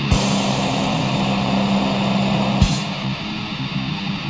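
Black/death metal: a distorted electric guitar chord held and ringing out, with a drum-and-cymbal hit at the start and another about two and a half seconds in.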